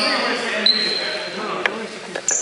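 Basketball bouncing on a hardwood gym floor, with one sharp bounce about one and a half seconds in. Players' voices echo in the hall, and high squeaks, likely sneakers on the court, run through the first second.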